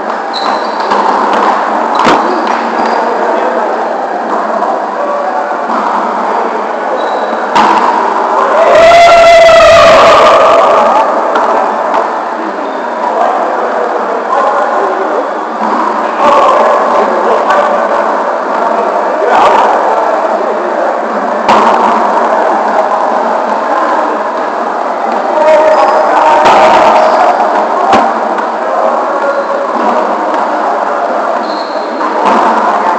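Echoing gymnasium din of volleyball play: overlapping voices with scattered sharp thumps of volleyballs being hit and bouncing. One louder shout rises out of it about nine seconds in.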